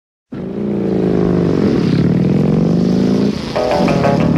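A motorcycle engine revving, its pitch sinking and rising again. About three and a half seconds in, music with a steady beat comes in.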